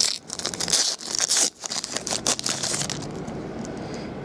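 A foil trading-card pack wrapper being torn open and crinkled by hand, in a run of ripping and crackling bursts over the first two and a half seconds. After that it fades to a quieter rustle.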